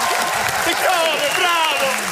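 Studio audience applauding, with voices calling out over the clapping.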